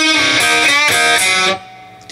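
Electric guitar, tuned a half step down, playing a short pentatonic blues run from the open E string up to the B and G strings, heard through the amplifier. The notes stop about a second and a half in.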